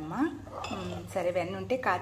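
A steel spoon clinking and scraping against a stainless steel vessel while stirring a thick sugar-and-ghee mixture, with a voice speaking over it.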